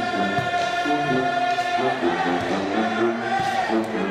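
Music: a group of voices singing slow, held notes, one note held through the first two seconds before the harmony moves on.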